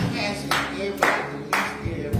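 Hand clapping in a steady beat, about two claps a second, over a sustained keyboard chord.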